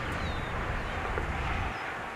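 Outdoor field ambience: a steady hiss with a low rumble, typical of wind on the microphone, that drops away near the end, and a couple of faint high chirps.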